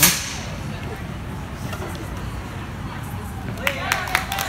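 Indoor gym background noise with faint voices. A brief sharp swish and thump comes right at the start, and a few sharp clicks near the end.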